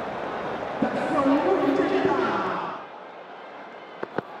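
Noise of a large stadium crowd, with a drawn-out voice or chant standing out of it for a second or so. The crowd noise drops away sharply a little before three seconds in.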